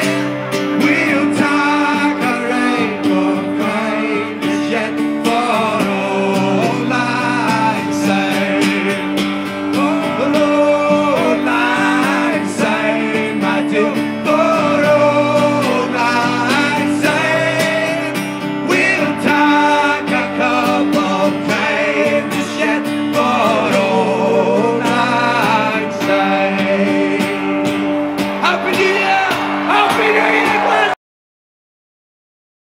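Band music: singing over guitar, with held notes underneath.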